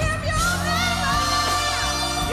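Live gospel performance: a female lead voice sings held, wavering notes with vibrato over a band.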